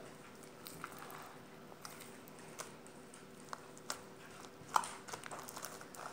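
Lotion-softened slime being kneaded and squeezed between the hands, giving faint scattered wet clicks and squelches, the loudest about three-quarters of the way in, over a faint steady room hum.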